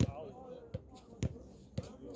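A basketball dribbled on a hard outdoor court, bouncing four times at an uneven pace of about two bounces a second.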